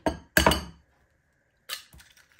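An egg struck against the rim of a glass mixing bowl to crack it: two sharp clinks close together at the start, then a further softer knock near the end as the shell is broken open.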